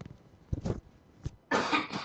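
A person coughing: a short sound about half a second in, then a louder cough lasting about half a second near the end.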